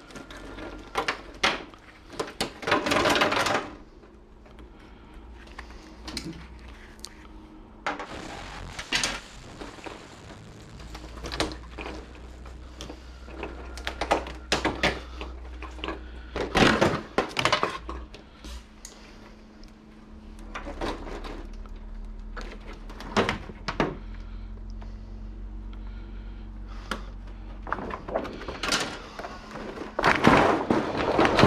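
The layers of a flatscreen TV, its LCD panel and thin plastic diffuser and reflector sheets, being lifted and flexed by hand. It makes irregular clacks and knocks, with a dense crackling rustle a few seconds in.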